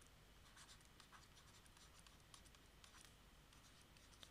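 Near silence with faint, irregular scratching and tapping of a stylus writing on a tablet.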